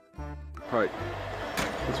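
A snatch of background music ends half a second in, giving way to the steady running of a flatbed semi-truck's diesel engine under outdoor noise, with a single sharp knock about a second and a half in.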